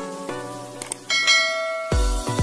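A subscribe-animation sound effect over light background music: a faint click a little under a second in, then a bright bell chime that rings on for about a second.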